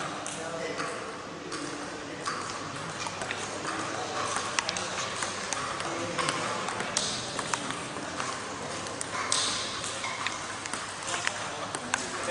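Table tennis balls clicking sharply off paddles and tables at irregular intervals, over a steady background of voices chattering.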